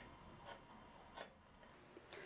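Near silence with two faint ticks, about half a second and a second and a quarter in: a pencil marking a line along a square's steel blade on a small wooden stick.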